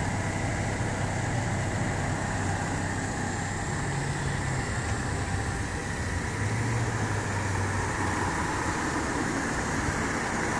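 Steady low hum of motor-vehicle noise, even and unchanging, with no sudden sounds.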